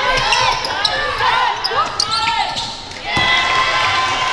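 Live basketball game sound on a hardwood court: many short, sharp sneaker squeaks, with a basketball bouncing and some knocks. Voices call out in the background.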